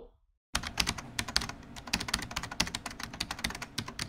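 Rapid computer-keyboard typing, many keystrokes a second, starting about half a second in after a brief silence.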